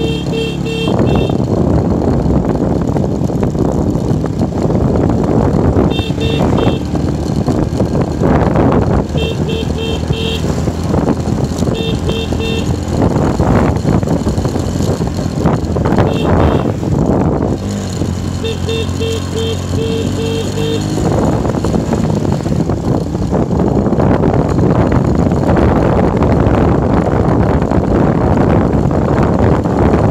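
A motorbike being ridden uphill, its engine running under steady wind and road noise. Short bursts of rapid beeping sound several times: near the start, around six, ten, twelve and sixteen seconds, and a longer run around nineteen to twenty seconds.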